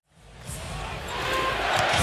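Basketball arena crowd noise swelling in over the first second after a brief silence. A basketball is dribbled on the hardwood court.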